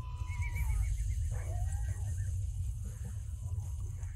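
Film soundtrack of a horse charge: horses whinnying in the first two seconds over a continuous low rumble.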